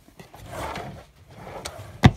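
Soft rubbing and rustling with a light click near the end, from a dresser drawer being handled.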